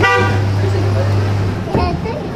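A short vehicle horn toot at the start over a steady low hum that stops shortly before the end, with people talking on the street.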